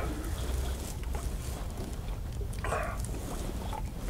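Sipping and swallowing a drink from a mug, with one louder slurp a little under three seconds in, over a low steady rumble.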